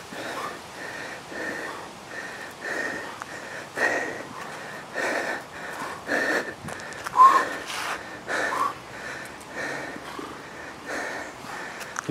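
A man breathing hard under the load of a 25 kg sandbag during walking lunges: forceful breaths about once a second, a few with a short voiced grunt.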